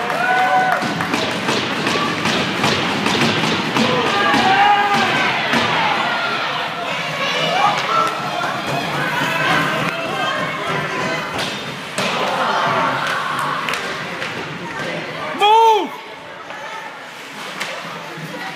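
Youth ice hockey in play inside a rink: sticks and the puck knock and thud against the ice and boards, while spectators shout and call out throughout. One loud, short shout close by comes about three-quarters of the way through.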